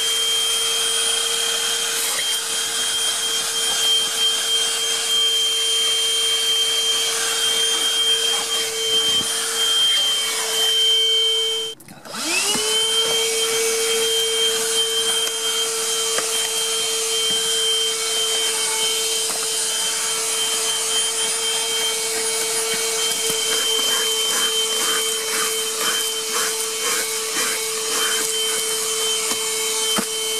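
HoLIFE 14.8-volt cordless handheld vacuum cleaner running with a steady high whine as its nozzle works over car upholstery and carpet. About twelve seconds in the motor cuts out for a moment, then spins back up, the whine rising back to pitch. A run of light ticks comes in the second half.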